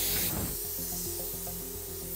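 Plasma cutter torch blowing compressed air with a hiss that is loud at first and drops to a fainter hiss about half a second in. It is not cutting, because the ground clamp is not attached and no cutting arc can form to the plate.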